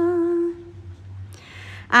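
Unaccompanied Khmer smot chanting: one long held note, slightly wavering, ends about half a second in. After a short pause the next phrase begins at the very end.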